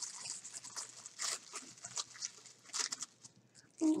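Wrapping being torn and crinkled open by hand: an irregular run of dry crackles and rustles, louder about a second in and again near three seconds.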